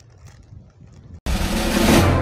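Faint outdoor background for about a second, then a sudden loud whoosh that sweeps down in pitch over a deep bass hit, opening a theme-music stinger.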